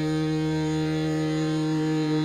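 Hindustani classical music in Raag Bhoop: one long note held steady at a single pitch over a tanpura drone, in a slow, unmetered opening.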